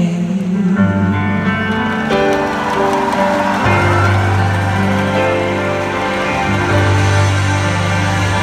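Live band playing an instrumental passage of a pop ballad between sung lines: sustained chords over a held bass line that changes notes every few seconds. It is heard from the audience of a large venue.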